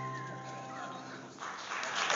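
Men's choir holding a final sung chord with a whistled note on top. The chord dies away about a second and a half in, and applause starts and grows.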